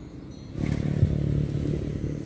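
A low engine rumble, like a motor vehicle going by, starts about half a second in. There is a sharp click about a second in.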